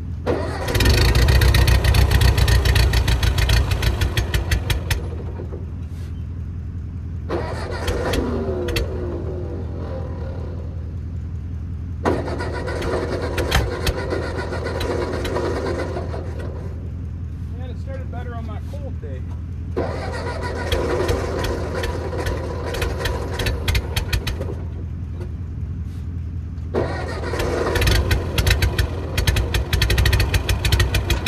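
Ford 9N tractor's four-cylinder engine running with a steady low rumble, rising into loud bursts of a few seconds at a time, starting about a second in and again several times, as it is being started and worked.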